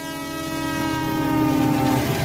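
A train horn sounding one long blast that sinks slightly in pitch and swells in level, over the low rumble of a train.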